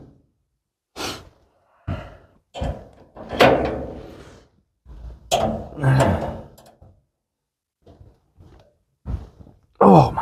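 A box-end wrench working a tight nut on a steel brake pedal bracket: a series of irregular thunks and clanks. Straining grunts and breaths come with the effort.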